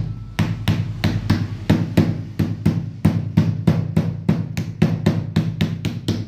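Mallet tapping a plastic cell-holder frame down onto cylindrical lithium iron phosphate cells, with steady sharp knocks about four a second.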